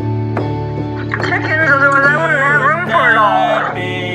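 Electronic keyboard playing sustained chords, with a fresh note struck near the start. From about a second in until near the end, a wavering, voice-like melody line rises and falls over the chords.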